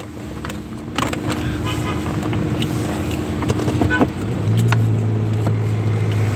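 Car running, heard from inside the cabin: a steady hum with a click about a second in, then a stronger, steady low drone from about four and a half seconds in.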